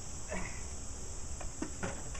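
Steady, high-pitched drone of an insect chorus, unbroken throughout.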